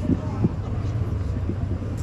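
A steady low hum with a few dull thumps and faint voices; no music is playing.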